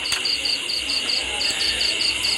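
A cricket chirping steadily, about four to five short, high chirps a second.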